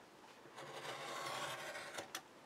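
A sharp craft knife drawn along a ruler, slicing through chipboard: a faint, steady scraping that starts about half a second in.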